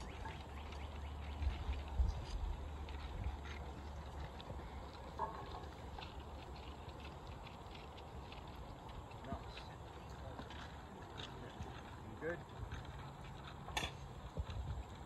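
Outdoor field ambience: faint, distant voices and a few light knocks and clicks, over a low rumble in the first few seconds.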